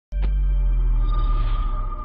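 Synthesized musical sting for a show's opening title card. It starts suddenly with a deep bass drone and held tones. A bright high tone joins about a second in, and the sound begins to fade near the end.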